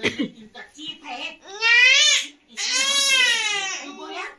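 A toddler crying: two long cries about a second and a half and two and a half seconds in, each rising then falling in pitch, with short whimpering sounds between.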